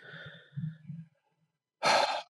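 A man's laugh trailing off into a sigh: a soft, low voiced breath fades out within the first second, then a short, louder breath out comes near the end.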